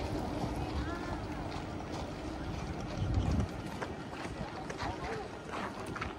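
Outdoor city-street ambience: a steady hum of distant traffic with faint voices, and a louder burst of low wind noise on the microphone about three seconds in.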